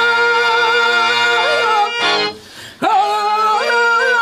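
A male voice sings a Telugu drama padyam (verse) in long, slightly wavering held notes over a steady harmonium drone. About two seconds in it breaks off for a breath, then comes back with an upward slide into the next long note.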